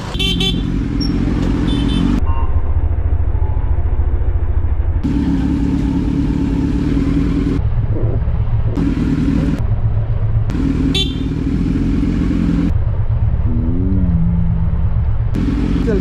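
Kawasaki Z900's inline-four engine running at low speed as the motorcycle rolls slowly off, with a steady low rumble throughout.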